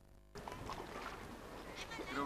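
A moment of near silence at a break in the tape. About a third of a second in, faint steady noise of wind and sea water over open water takes over.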